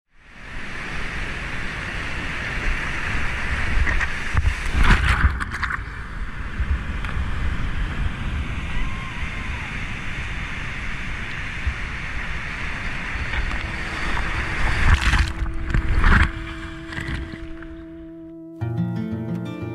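Heavy whitewater rushing around a kayak, with wind on the microphone and two louder crashing surges of water, about five seconds in and again near the end. Near the end the water drops away and a steady low musical tone is left.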